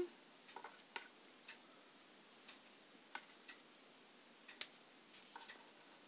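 Faint, scattered small clicks and rustles of fingers handling a crocheted flower built on a plastic jelly cup, over near silence.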